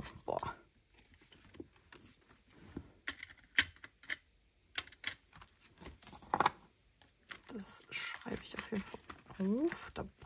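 Paper and money handled on a tabletop: a small paper ticket crumpled, banknotes rustling, and scattered sharp taps and clinks of coins and objects set down. The loudest tap comes about three and a half seconds in, with another just after six seconds.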